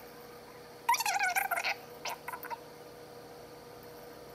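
A chair squeaking once, a high wavering squeal about a second in, followed by a few faint ticks.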